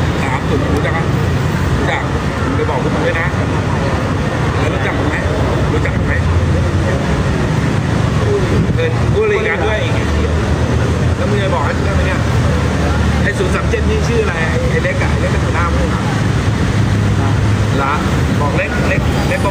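Steady roadside traffic noise, a continuous low rumble of passing vehicles, with indistinct voices talking over it.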